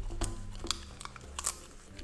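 Golden retriever puppy biting and chewing a lettuce leaf: a few crisp crunches spread through the moment, over soft background music.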